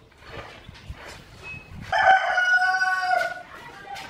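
A rooster crows once, a single long call of about a second and a half that begins about two seconds in and is the loudest sound here. Before it come faint knocks of plastic being handled.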